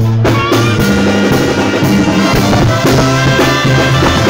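A Mexican banda plays live: an instrumental passage led by the brass section, with trumpets over a steady low bass line and drums.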